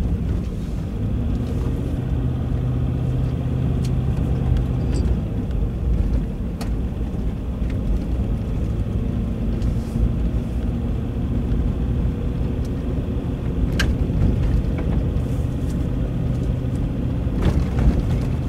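A vehicle driving slowly on a dirt road: a steady low engine drone with tyre rumble on the unpaved surface, and a few sharp clicks.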